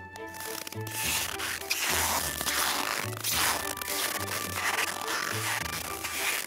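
Hiking boots squeaking in hard-packed, settled snow at about −34 °C, one squeaky step about every second, five or so in a row. The squeak comes from the extreme cold and the compacted snow, and sounds like rubber-soled sneakers on a rubber floor.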